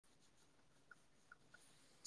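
Near silence, with three faint short ticks in the second half.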